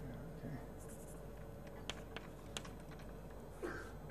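Chalk writing on a blackboard: faint scratching with a few sharp taps as the chalk strikes the board, the two clearest about two seconds in.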